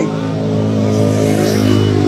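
Steady low engine hum of a motor vehicle on the road, swelling slightly toward the end.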